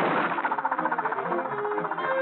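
Fast, busy cartoon orchestral score, with many quick notes crowding together and entering loudly and suddenly.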